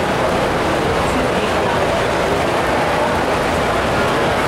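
Steady background noise of a crowded livestock show arena: a constant even rush with faint, indistinct crowd voices underneath.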